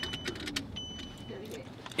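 A high electronic beep inside a car, each lasting about half a second and repeating about once a second, with a few light clicks around it.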